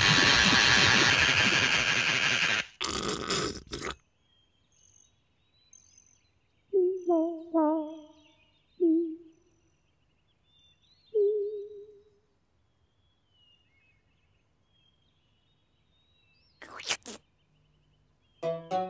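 A loud, steady hiss lasting nearly three seconds, with a few rougher bursts after it. Then quiet with faint high chirps, four short wavering hums from voices between about seven and twelve seconds in, and a brief burst of noise near the end.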